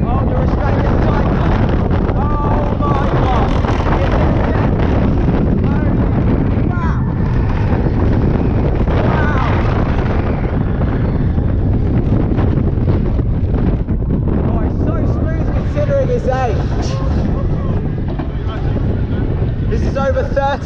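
Roller coaster ride heard from the moving car: loud rushing wind buffeting the microphone over the rumble of the train running along the track through the drop. A few short yells from riders rise above it.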